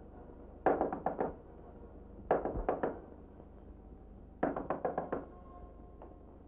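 Knuckles knocking on a door: three rounds of quick raps, about five knocks each, with a short pause between the rounds.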